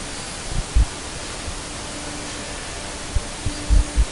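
Conquest 515 CNC router cutting parts out of a sheet: a steady hiss of the spindle and bit running through the board, with a few short low thumps about half a second in and again near the end.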